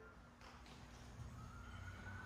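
Near silence: room tone in a pause between phrases of woodwind quintet music, with a faint thin steady tone coming in about halfway through.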